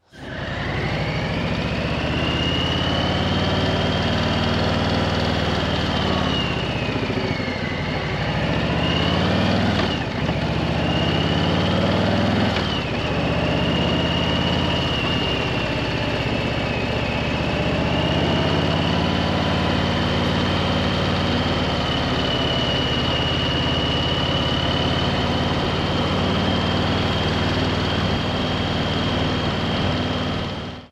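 Harley-Davidson Street Bob 114's Milwaukee-Eight 114 V-twin on stock exhaust pipes, running under way on the road. The engine note dips and climbs again a few times in the first half, then holds fairly steady.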